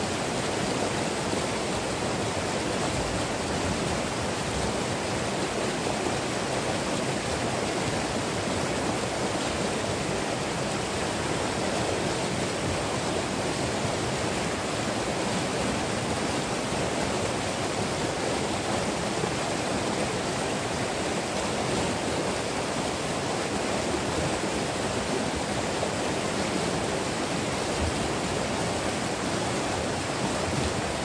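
Shallow, fast-flowing mountain stream rushing over rocks: a steady, even rush of water.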